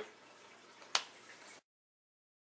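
A single sharp click about a second in, over faint room tone; a little later the sound cuts off to dead silence.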